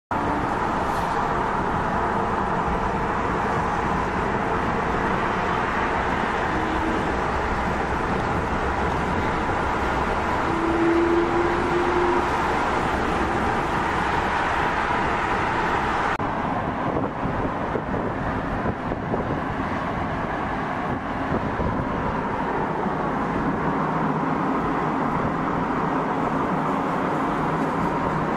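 Steady road noise of cars driving at speed on a highway, a hiss of tyres and rushing air; the higher hiss drops away about sixteen seconds in.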